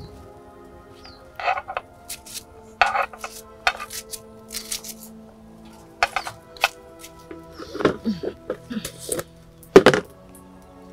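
Soft background music with sustained tones, under scattered sharp clinks and knocks of pots, dishes and utensils being handled during cooking. The loudest knock comes near the end.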